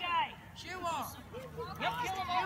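Young fighters' voices shouting and calling out in short rising-and-falling yells, once near the start and again around a second in.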